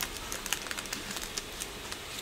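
A quick run of light, irregular clicks and taps, about four or five a second, over low room hiss.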